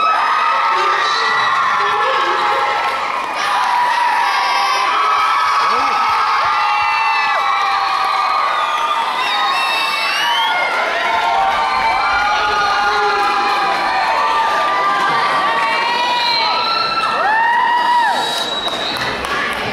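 A school audience cheering and shouting, with many high-pitched screams and whoops overlapping, loud and sustained.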